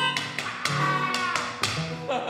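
Melodica and acoustic guitar playing together: the guitar strummed in a steady rhythm, about two strokes a second, under reedy melodica notes.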